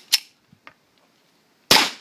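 A single shot from a Fort-12G 9 mm P.A.K. gas pistol firing a Ukrainian Teren-3 gas cartridge, about three-quarters of the way in, with a short sharp click just after the start. The shot is a light "pshik" that does not cycle the heavy steel slide: no reload, with smoke pouring from the pistol's gaps.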